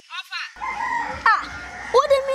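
A rooster crowing once: a drawn-out call that holds steady, then falls away at the end.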